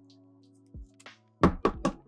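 A rigid plastic top loader with a card in it knocked against the tabletop: about four quick, sharp knocks about one and a half seconds in, with a faint click or two before them. Soft background music with held notes plays underneath.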